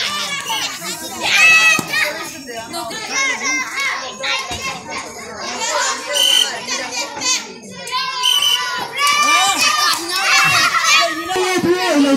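A group of children's voices calling out and talking over one another, many high-pitched voices at once, with no pause throughout.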